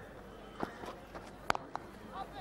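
A cricket bat striking the ball once, a single sharp crack about one and a half seconds in, preceded by a few softer thuds over faint ground ambience.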